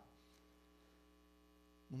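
Near silence: a faint, steady electrical mains hum made of several even tones.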